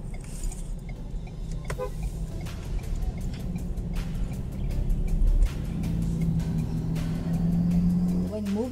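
Background music with a steady beat, over the low rumble of a car moving on the road, heard from inside the cabin.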